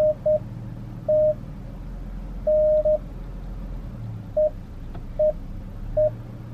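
Short electronic beeps on one steady mid pitch, about seven at uneven intervals, mostly brief with one longer, over the low rumble of a moving car's cabin.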